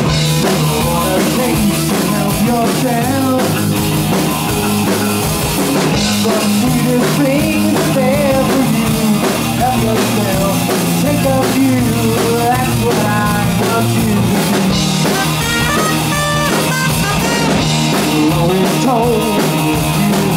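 Live rock band playing loud and steady: electric guitar, electric bass and drum kit, with a trumpet coming in near the end.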